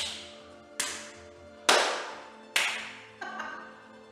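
Hand claps, about one a second, five in all with the last one softer, over quiet background music.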